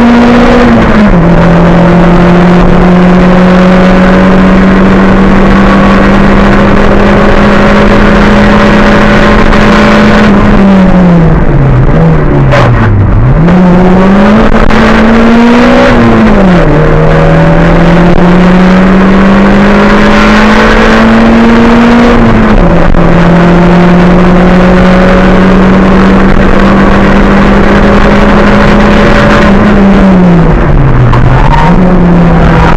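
A race car's engine heard from inside the cabin, held at high revs on a hillclimb run. The pitch steps down sharply at gear changes shortly after the start and at about 16 and 22 seconds. Around the middle the revs fall away low before climbing again as the car powers out.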